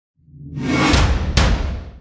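Show-intro logo sting: a whoosh that swells up over deep bass, with two hits about a second and a second and a half in, then fades out.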